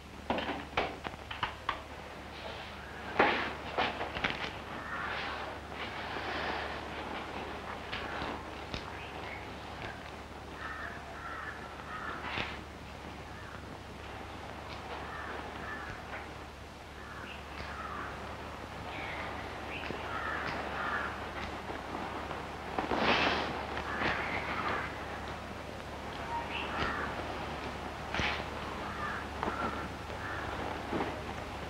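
Crows cawing repeatedly in the background, with a few sharp knocks and clicks in the first few seconds and a steady low hum underneath.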